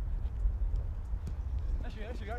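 Footsteps of players running and the ball being touched on artificial turf, heard as faint irregular taps over a steady low rumble. A voice begins right at the end.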